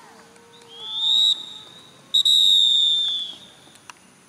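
Referee's whistle blown twice: a short blast rising slightly in pitch about a second in, then a longer held blast from about two seconds in that tails off near the end.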